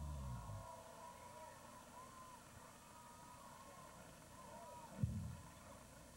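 The last of a TV talk-show band's music dies away right at the start, leaving a faint murmur of voices and one short, low thump about five seconds in.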